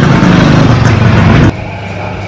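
A motor vehicle running close by in the street, loud and low-pitched, cutting off suddenly about one and a half seconds in and leaving quieter background noise.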